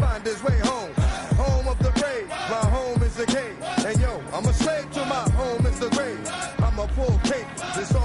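Hip hop music: deep bass notes that slide down in pitch, over a repeating melody and ticking hi-hats.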